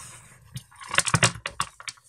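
A quick run of sharp clicks and rustles from a small grey fabric accessory pouch being handled. It starts about half a second in and is densest in the second half.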